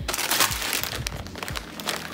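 Plastic bag of brown rice crinkling as it is picked up and handled, a dense run of crackles.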